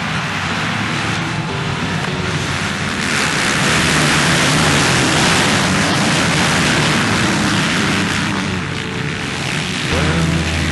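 Motocross motorcycles racing, their engines blending into a dense, steady noise that swells about three seconds in and eases near the end.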